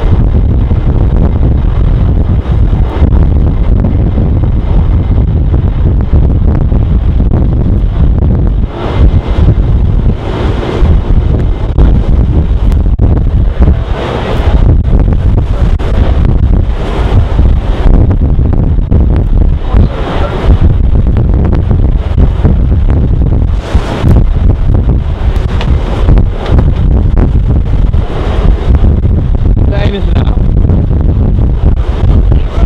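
Heavy wind buffeting the microphone over the rush of sea water churning between two ships running close alongside. Repeated surges of splashing water come through in the second half.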